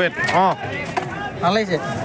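Speech: a voice talking in short phrases, no other sound standing out.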